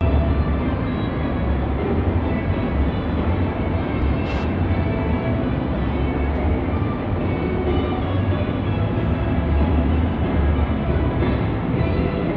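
Music with a continuous loud low rumble underneath.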